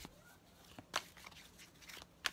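Tarot deck being handled and shuffled by hand: quiet, with about three sharp card clicks, one near the start, one about a second in and one near the end.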